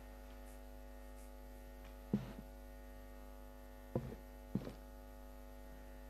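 Steady electrical mains hum on the microphone line, with three short soft knocks about two, four and four and a half seconds in.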